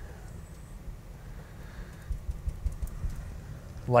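A brush working oil paint onto a canvas: soft dabbing with a few low taps a little past halfway, over a steady low room hum.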